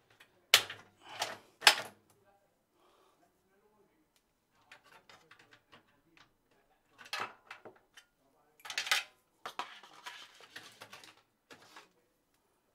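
Hands handling PC-build parts and packaging: three sharp clicks about half a second to two seconds in, then intermittent rustling and rattling of plastic packaging and cables in the second half.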